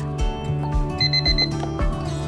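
Gentle background music, with an electronic alarm beeping rapidly for about half a second, five short beeps, about a second in.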